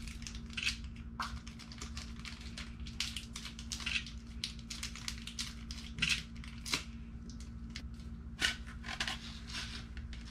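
Small plastic wrapper crinkling and rustling in a child's fingers as she picks at it to get it open, in quick irregular bursts of rustle, over a faint steady hum.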